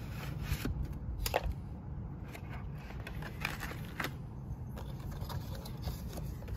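A cardboard product box and its moulded plastic insert tray being handled: light scraping and sliding, with a few sharp taps.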